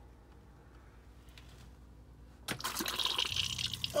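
Camper van cassette toilet flushing from its electric button: after a quiet start, water suddenly rushes into the bowl about two and a half seconds in and keeps running.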